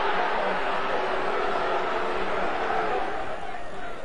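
Football stadium crowd: a steady hubbub of many spectators, easing slightly near the end.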